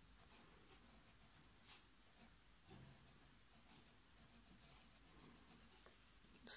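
Very faint scratching of a thin fountain-pen nib on ruled paper as cursive words are written in short strokes.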